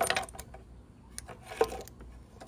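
Light metallic clinks of a small wrench being fitted over the bleed nipple of a scooter's front brake caliper: a quick cluster of clinks at the start and a sharper single clink about a second and a half in.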